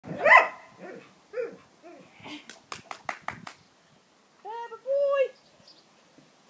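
Dog barking several times, the loudest bark right at the start and two drawn-out calls near the end, with a run of sharp clicks in between.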